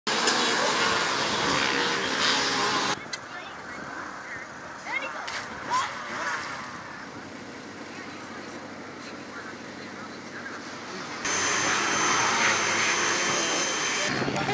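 Loud rushing noise for about three seconds, then a quieter outdoor stretch with a few short calls. Then a pressure washer spraying: a steady hiss with a thin high whine from its pump, for the last few seconds.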